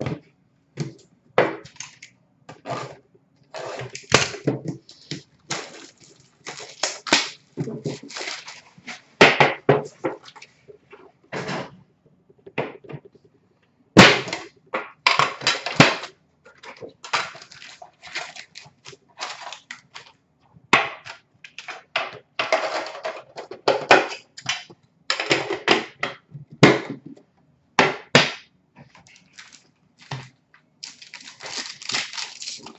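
Plastic shrink-wrap and cardboard packaging of a sealed hockey card box being torn open and crinkled, in short irregular spells of rustling with a couple of sharp knocks.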